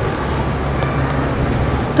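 A steady low background rumble with no speech.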